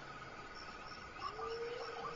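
Faint, steady chirping of insects, like crickets, in a regularly repeating pattern, with a faint held tone coming in about halfway through.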